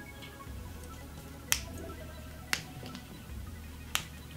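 Snap clips of a clip-in hair extension weft clicking shut in the hair: three sharp clicks about a second apart.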